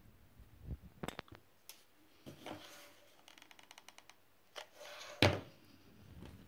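Small handling sounds of foam flower-craft work on a tabletop: clicks, rustles and light taps from petals, wire and card. A quick run of fine ticks comes a little past the middle, and a sharper knock just after five seconds is the loudest sound.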